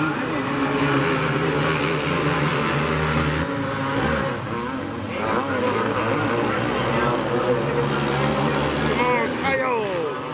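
Several outlaw kart engines racing on a dirt oval together, their pitch rising and falling as they accelerate and lift through the turns.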